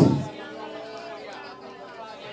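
Several voices murmuring at once as a congregation prays quietly in tongues. A loud burst on the microphone, just before, dies away at the very start.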